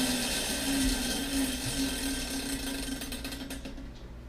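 Plastic spinner on a Bean Boozled canister lid, clicking rapidly as it spins, then slowing and stopping shortly before the end. The spin picks the flavour pair for the next jelly bean.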